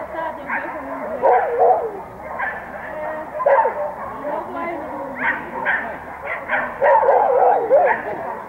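A dog yipping and barking over and over, with people's voices in the background.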